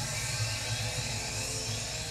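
Anime sound effect for a teleportation technique: a steady whirring hiss with a thin tone rising slowly in pitch, over a low drone.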